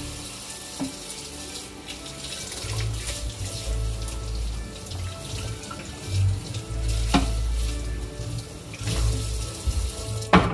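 Kitchen tap running into the sink while a cutting board is rinsed under it, with a couple of sharp knocks of the board against the sink.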